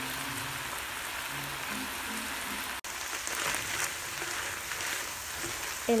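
Ground turkey and diced celery frying in a skillet: a steady sizzle, broken by a brief dropout about three seconds in.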